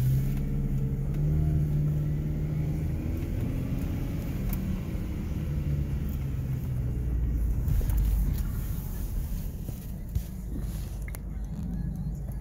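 Car engine running with a steady low rumble, its pitch wavering slightly in the first few seconds.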